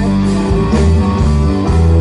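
Live rock band playing an instrumental passage without vocals: electric guitars over a strong, steady bass line.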